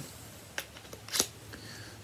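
Two small clicks, about two-thirds of a second apart, the second louder: a plastic neopixel lightsaber blade being pushed into the metal hilt's blade socket.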